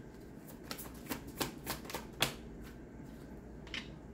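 A deck of tarot cards being shuffled by hand: a string of quick, irregular card flicks and snaps, the sharpest a little after two seconds, then a quieter stretch with one last flick near the end.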